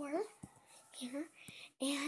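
A boy talking in short, indistinct phrases, with a brief break in the sound shortly before the end.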